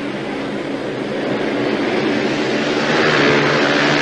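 Speedway motorcycles' 500 cc single-cylinder engines racing at full throttle, the sound slowly growing louder as the bikes come nearer.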